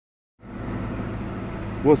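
Steady low hum and air noise inside a car cabin, starting about half a second in after a silent opening.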